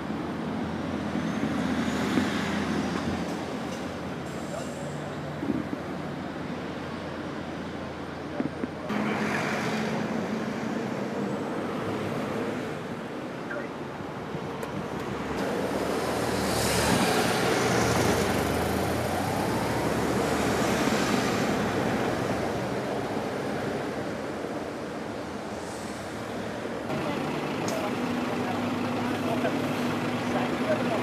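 Traffic noise in a motorway jam: car and lorry engines idling steadily, swelling louder for a few seconds in the middle.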